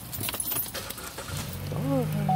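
A brief jangling clatter of small hard items in the first half second or so, then a steady electronic-sounding tune of low held tones begins about one and a half seconds in.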